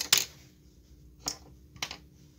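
Sharp clicks and knocks of small hard objects being handled close to the microphone: a quick double click at the start, then two single clicks about a second later.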